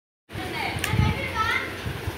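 A young child vocalising while playing, a few short sounds rising and falling in pitch, with a sharp click and low thumps from handling. The sound begins abruptly after a brief silence at the very start.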